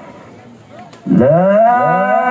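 Faint murmur, then about a second in a male Quran reciter opens a long, loud recited note through a microphone and PA. Its pitch rises and then holds with wavering melismatic ornaments.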